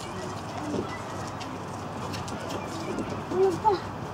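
Faint voices of people below and a steady low background murmur, with a brief call from a voice about three and a half seconds in.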